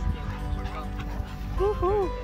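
A dog gives two short, rising-and-falling yips near the end, over background music.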